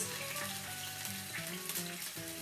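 Raw chicken pieces sizzling as they fry in hot oil in a pan, a steady hiss as they begin to brown. Background music plays under it.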